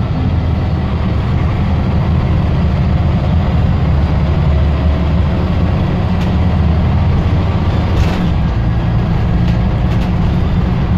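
Scania OmniDekka double-decker bus on the move, heard from its upper deck: a steady low engine drone with road noise. A few faint clicks from the body come in the later seconds.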